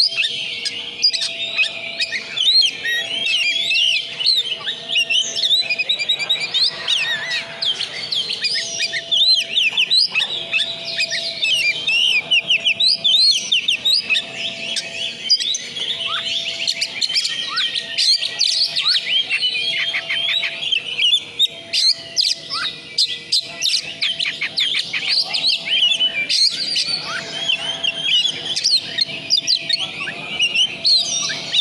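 Caged oriental magpie-robin (kacer) singing without pause, a fast, dense run of varied whistles, trills and chattering notes.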